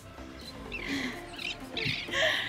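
Seabirds calling overhead, a few short harsh cries about a second in and near the end, over quiet background music.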